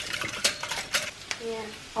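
A wire whisk clinking against a glass measuring cup of beaten eggs, a run of irregular light clicks and taps.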